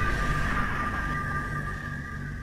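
Tail of a logo-intro sound effect: two held high synth tones over a low rumble, fading steadily away.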